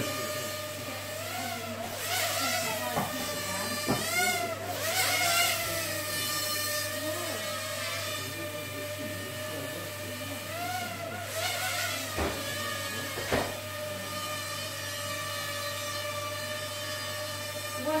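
Mini quadcopter drone with propeller guards flying: a steady high-pitched propeller whine that swoops up and down in pitch a few times as the motors speed up and slow while it manoeuvres. A few short sharp knocks come through it.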